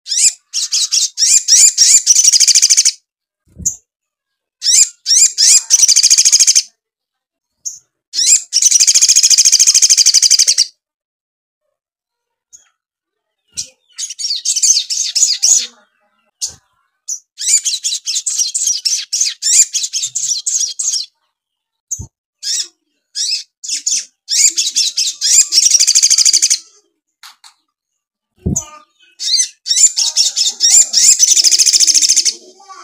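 Male olive-backed sunbird singing loudly in bouts of rapid, high-pitched chattering trills, each one to three seconds long, with short pauses between them. The song is the kind that keepers prize as full of mimicked tree-sparrow phrases. A few soft knocks come from the bird moving in its cage.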